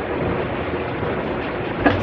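Electric fan running in the background: a steady rushing noise with a faint low hum, and a short sharp sound near the end.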